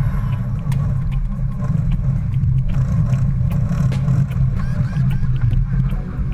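Steady low rumble of wind buffeting the microphone and water rushing past the hull of a racing sailboat under way, with scattered sharp clicks on deck.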